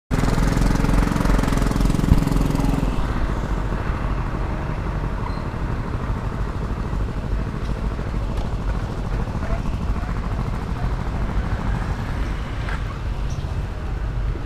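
Motor scooter riding along a street: the small engine running with steady road and wind rumble on the camera. A deeper engine hum is heard for the first three seconds, then fades into the even road noise.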